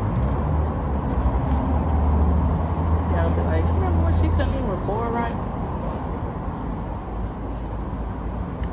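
Low rumble of a vehicle engine running nearby over steady traffic noise; the rumble drops away a little past halfway, with indistinct voices briefly in the middle.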